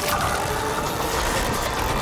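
Cartoon action sound effects: a steady, dense engine-like rumble of a racing mecha-beast.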